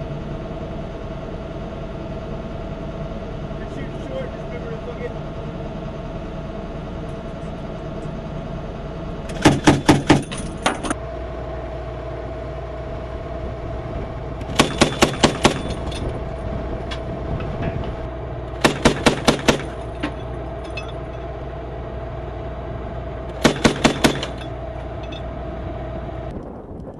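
Mk-19 40 mm automatic grenade launcher firing four short bursts of about five or six rounds each, a few seconds apart, over the steady running of an armoured vehicle's engine.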